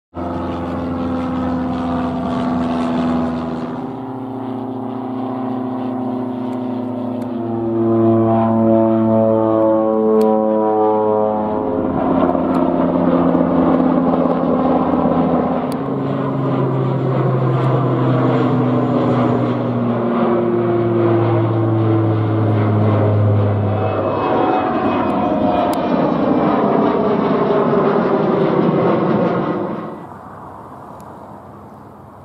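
Low-flying propeller aircraft droning loudly overhead, in a run of short clips that change every few seconds. The engine pitch falls as a plane passes, twice.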